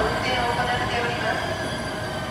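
A station platform announcement over the public-address speakers, heard over the steady hum of a JR Kyushu 885 series electric train standing at the platform with its doors open.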